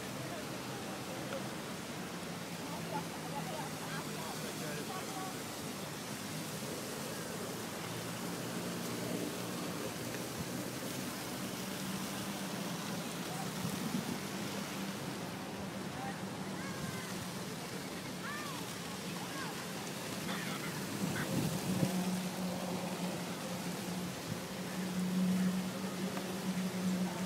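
Wind rushing over a phone microphone while cycling, with people's voices in the background. A steady low hum runs underneath and gets louder near the end.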